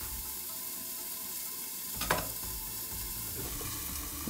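Steady sizzle of chicken pieces frying in oil in a lidded frying pan, with one short click about two seconds in.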